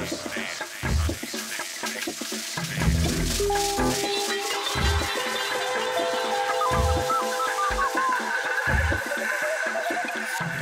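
Electronic music played live on synthesizers and samplers: fast high ticking percussion over low bass hits about once a second. Held synth tones come in about a third of the way through, with short chirping synth notes near the end.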